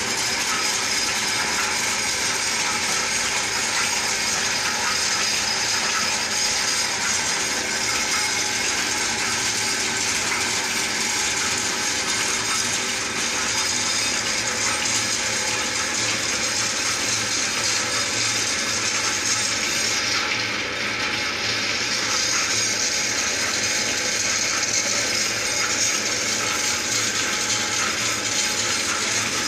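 Metal lathe running, turning a tamarind-wood log as the cutting tool shaves it down into the mortar of a mustard-oil ghani: a steady machine drone with a continuous cutting hiss. The hiss dips briefly about twenty seconds in.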